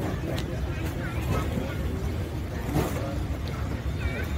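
Indistinct background voices over a steady low rumble.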